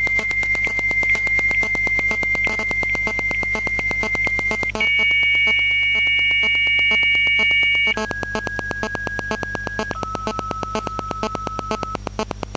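Dial-up modem answering a call, heard through a mobile phone's loudspeaker. A steady high answer tone runs for about five seconds, then a higher chord of tones for about three seconds, then two lower steady tones, each a step lower and about two seconds long, over a fast regular buzz. These are the modem's handshake tones, and the phone cannot answer them, so no connection is made.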